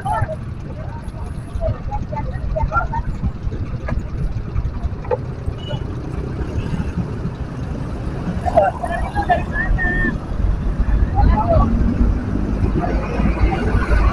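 Low rumble of idling engines in stopped city traffic, with scattered voices of people nearby. The rumble grows louder near the end as a bus draws up alongside.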